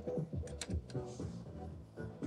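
Quiet music with a regular beat, playing steadily. A few sharp clicks come about half a second in.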